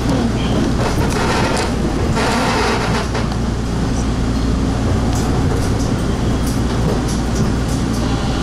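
Bombardier T1 subway train running at speed through a tunnel, heard from inside the car: a steady loud rumble of wheels on rail, with a brief rise in hiss about one and a half to three seconds in and scattered light clicks.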